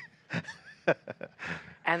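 Several people laughing in short, breathy bursts with gaps between them. A voice starts speaking near the end.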